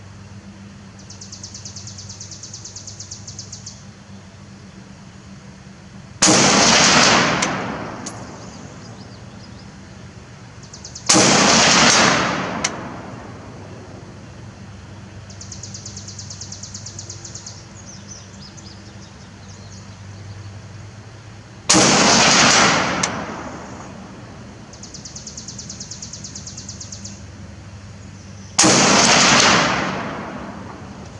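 Four rifle shots from a short-barrelled Beretta ARX100 in 5.56×45mm with a 10-inch barrel, fired several seconds apart. Each is a sharp report that rings out and fades over about a second and a half.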